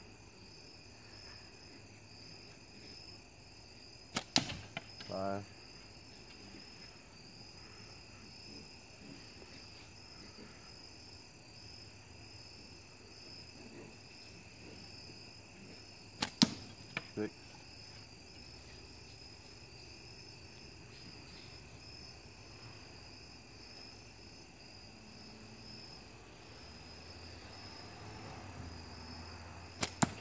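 Two slingshot shots with light latex bands and heavy 7/16-inch ammo, about 12 seconds apart, with a third at the very end: each a sharp snap of the released bands, followed within about a second by fainter knocks as the ball reaches the spinner target. Crickets chirp steadily throughout.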